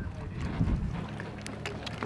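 Low steady outdoor rumble with wind on the microphone, and one faint sharp click about a second and a half in.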